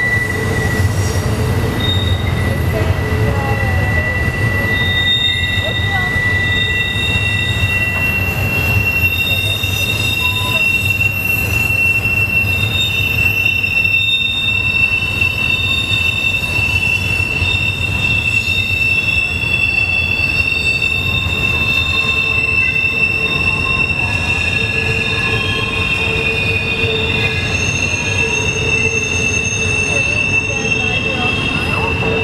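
Steel wheels of a double-stack container train's well cars squealing against the rail as the train rolls through a sharp curve, over a steady low rumble. The squeal holds on several high steady pitches that start and stop, one giving way to a slightly higher one about a quarter of the way through. This is flange squeal from the wheels rubbing the rail in the tight curve.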